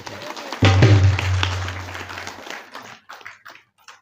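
A short musical flourish on harmonium and dholak: a deep drum stroke about half a second in rings and fades out over about two seconds, followed by a few light taps near the end.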